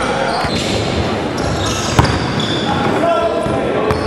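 Basketball game sounds in a gym: the ball bouncing on the hardwood court amid overlapping shouts and chatter from players and spectators, with short high squeaks and one sharp bang about two seconds in.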